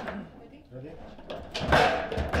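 Foosball table in play: a loud knock of the ball or rod-mounted figures against the table about 1.7 s in, with low voices.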